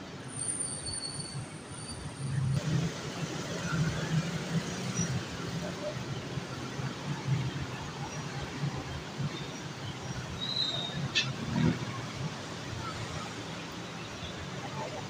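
Steady city traffic noise heard from an open-sided elevated walkway: a broad rumble with a few faint high squeals, growing louder about two and a half seconds in, and one sharp click about eleven seconds in.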